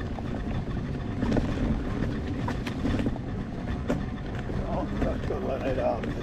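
Wind buffeting the microphone and a low rumble from an electric unicycle riding over a rough dirt path, with scattered clicks and knocks from the bumpy ground.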